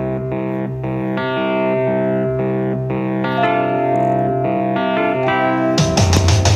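Background music: a sustained, picked chord pattern with notes struck every fraction of a second, and drums and a fuller band coming in just before the end.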